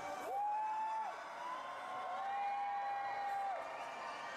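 A male singer holding two long high sung notes, each sliding up into the note and then held steady, the second longer than the first, over the cheering of a large arena crowd.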